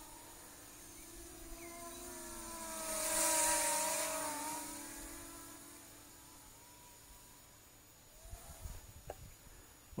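Syma W1 brushless quadcopter's propellers whining as it flies past, swelling to a peak about three to four seconds in and then fading away as it flies off.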